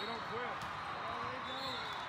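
Volleyball tournament hall ambience: balls being hit and bounced and many voices calling and talking, all echoing in the big hall.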